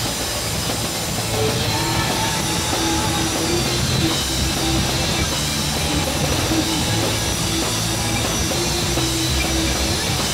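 Amateur rock band playing live: drum kit and amplified electric guitars in a loud, dense, poorly recorded mix.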